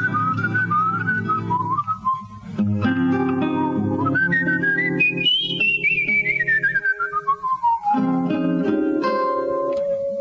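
A person whistling a jazz melody over fingerpicked jazz guitar chords. The whistled line climbs to a high note about five seconds in, slides down in a long falling run, and holds a low note near the end.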